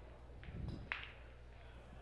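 Quiet arena room tone with a steady low hum, broken by a soft low thump a little after half a second in and one short, sharp click just under a second in.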